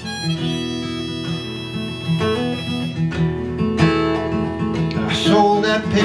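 Harmonica played in a neck rack over a strummed acoustic guitar: an instrumental break between sung verses.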